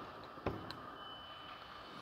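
Quiet indoor room tone, with one faint tap about half a second in and a faint high steady whine from about a second in.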